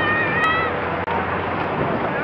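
Victorian Railways R class steam locomotive passing at close range, its working noise a steady rushing haze. A single high tone rises, holds briefly and stops under a second in.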